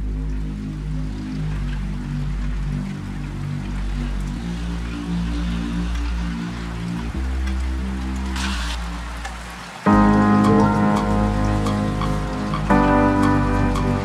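Instrumental intro of a slow R&B song played by a live band: low sustained chords with a steady hiss beneath them, a brief burst of hiss about eight and a half seconds in, then brighter, louder chords come in near ten seconds.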